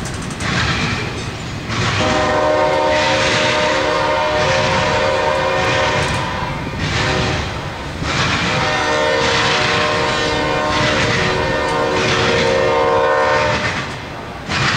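Intermodal freight train rolling past with steady wheel and rail noise, while a locomotive horn sounds two long chord blasts, the first about two seconds in and the second about eight seconds in.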